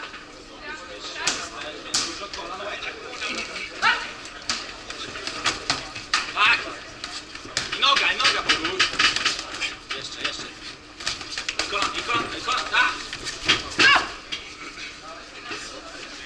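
Shouted voices from around the ring in a large, echoing gym hall, mixed with a run of sharp slaps and knocks of kicks and punches landing in a Muay Thai bout. The knocks come thickest in the middle of the stretch.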